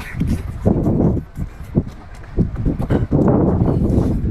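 Loud, wet eating sounds as a man bites into and chews a mouthful of cooked lobster tail meat, with a louder burst about a second in and again near the end.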